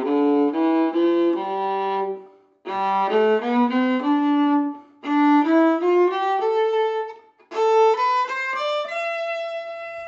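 Viola bowed in four short rising runs of notes with brief breaks between them, each run starting higher than the last, the fingers stepping up the notes on each string in turn.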